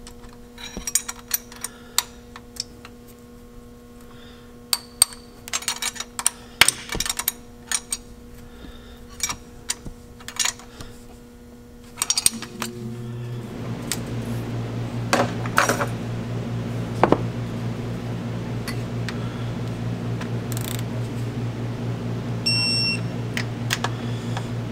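Metal hand tools clicking and clinking against the engine's valve train as the rocker adjusters and jam nuts are worked, in scattered sharp ticks. About twelve seconds in, a steady low machine hum starts and keeps going, with a short beep near the end.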